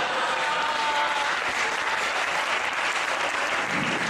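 Theatre audience applauding steadily, with a brief high tone standing out above the clapping about half a second in.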